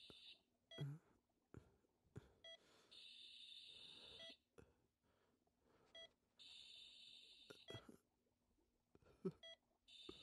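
Faint bedside patient-monitor beeps, short and repeating every second or two. About every three and a half seconds there is a soft hiss of breath through an oxygen mask.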